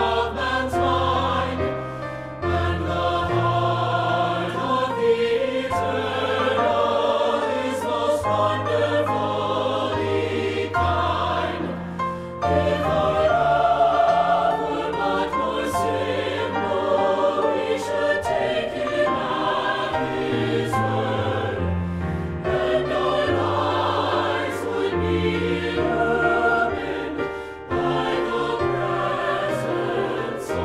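Four-part SATB choir singing a hymn anthem in harmony, accompanied by piano.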